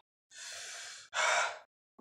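A man breathing hard through his mouth: a quieter breath lasting under a second, then a louder, shorter one. He is panting against the burn of extremely hot chicken wings.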